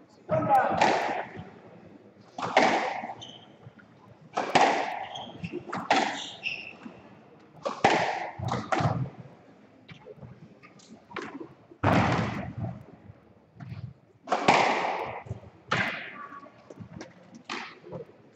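Squash rally: a squash ball struck by rackets and hitting the court walls, a sharp, echoing crack about every two seconds.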